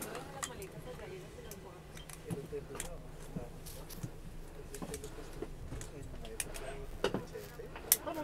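Boarding chatter in an ATR turboprop's cabin at the gate, engines not yet running: a low murmur of passengers' voices over a steady low hum, with a few sharp clicks and knocks scattered through it.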